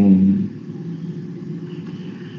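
A man's voice drawing out the end of a word, then a low steady hum for the rest of the time.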